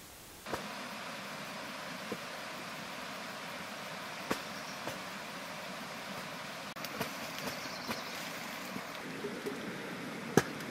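Steady rushing outdoor background noise that sets in about half a second in, with scattered short sharp clicks and knocks.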